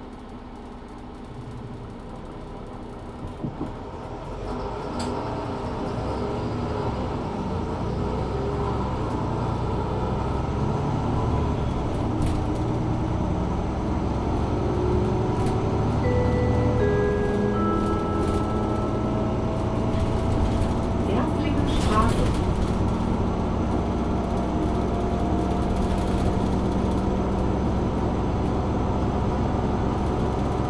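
Mercedes-Benz Citaro 2 LE city bus heard on board: its OM 936 h six-cylinder diesel and ZF EcoLife automatic gearbox pull away and accelerate, growing louder over the first several seconds and then running on steadily, with gliding drivetrain tones. About halfway through, a three-note chime sounds, each note lower than the last.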